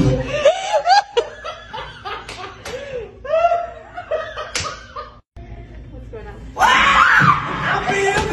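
A man laughing and exclaiming in short rising-and-falling bursts, with a few sharp smacks among them, then a sudden loud burst of voice near the end.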